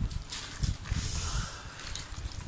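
People eating spicy burgers: hissing breaths through the mouth against the chilli heat, mixed with paper wrapper rustling, over soft irregular handling thumps. The two strongest hisses come about a third of a second in and about a second in.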